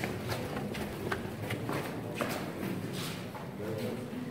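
Footsteps of several people walking on a hard floor, irregular shoe clicks and scuffs, under low murmuring voices.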